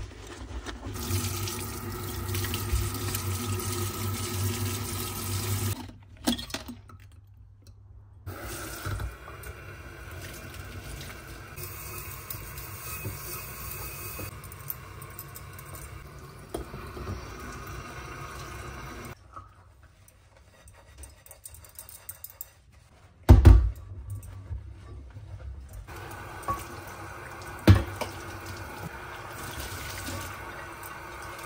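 Kitchen tap water running into a stainless-steel sink while dishes are rinsed under it, heard in several short cut-together stretches. Two sharp knocks stand out in the second half.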